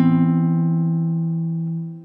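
Background music: a chord on a plucked string instrument rings on and fades away near the end.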